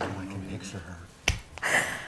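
Women laughing and murmuring softly, with one sharp click a little past a second in, then a short breathy burst.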